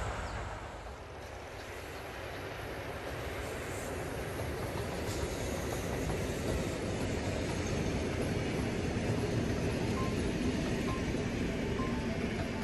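A train rolling past close by: the steady rumble of passenger coaches' wheels on the rails, growing louder as the coaches come level. Music starts to come in faintly near the end.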